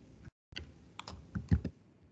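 A handful of quick taps on a computer keyboard, spread over the second half, one of them heavier and louder.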